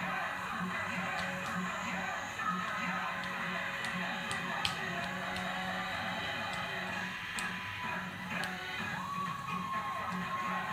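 Music with a steady beat playing from a television in a small room.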